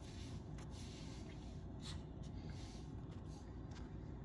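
Faint room tone: a low steady hum with a few faint ticks.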